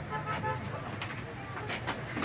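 Indistinct background voices over a low steady hum, with a few short clicks about a second in and near the end.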